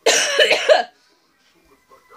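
A woman coughing, one burst of harsh coughing lasting about a second; she has a lingering cold.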